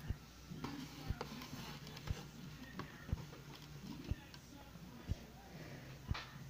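Faint background voices and music with a low knock about once a second.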